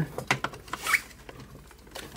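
Plastic clicks and small knocks from an APC Back-UPS 450's battery cover being pressed down by hand onto its case to snap it shut, a quick run of clicks in the first second, then quieter.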